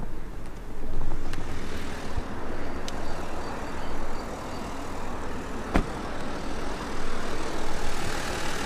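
Audi A8 D3 3.0 TDI V6 diesel idling with outdoor traffic noise around it while its air suspension raises the body to lift height; a single sharp knock about six seconds in.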